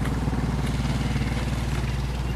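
Steady low hum of an engine running, unchanging throughout.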